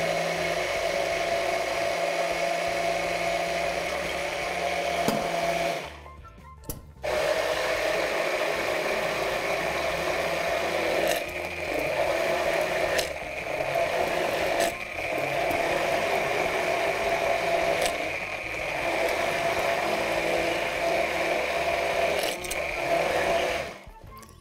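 Handheld immersion blender running in a tall plastic beaker, emulsifying a milk-and-almond sauce while olive oil is blended in. It stops for about a second around six seconds in, then runs on steadily with a few brief dips and stops just before the end.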